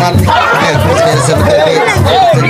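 A crowd of voices singing and chattering over a repeating drum beat, about two to three beats a second.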